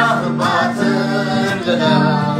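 A boy singing a melody to acoustic guitar accompaniment, the guitar holding steady low notes beneath the voice.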